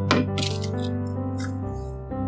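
Stainless steel bowl set down on a digital kitchen scale: a sharp metallic clank at the start, followed by light clinking and rattling, over soft piano background music.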